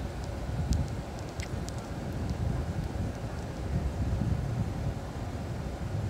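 Low, uneven rumble of wind on the microphone over a vehicle running.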